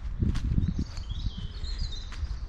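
A small bird singing a short warbling phrase from about a half second in, over a low, uneven rumble on the microphone.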